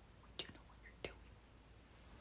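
Near silence: faint room tone with two brief soft clicks, about two-thirds of a second apart.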